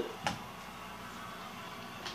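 Quiet room tone with a faint steady hum, broken by a single light click shortly after the start.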